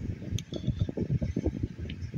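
Handling noise: irregular low knocks and rumble, with one small sharp click about half a second in, as a handful of AA batteries is shifted and closed in a hand.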